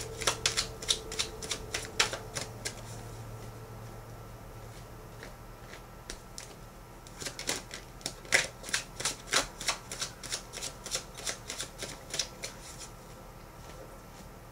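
A tarot deck being shuffled by hand: quick runs of card clicks and flicks, with a few quieter seconds in the middle before a second bout of shuffling.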